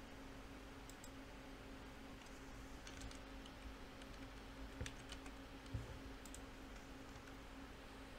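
Faint computer keyboard and mouse clicks, a handful of scattered taps, over a low steady hum.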